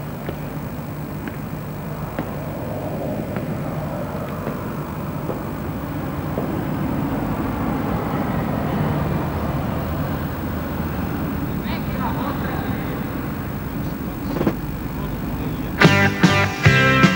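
A vehicle passing: a low rumble that swells gradually toward the middle and then eases off, over a steady low hum, with a couple of faint ticks near the end.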